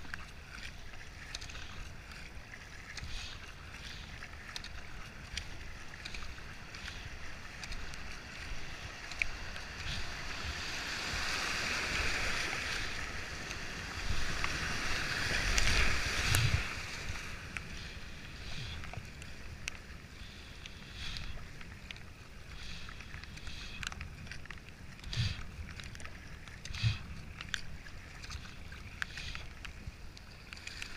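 Kayak paddle strokes splashing and water rushing past the hull as a kayak runs a river rapid. The rush of whitewater swells from about ten seconds in and is loudest around fourteen to sixteen seconds with heavy splashing, then eases back to paddle splashes in choppy water.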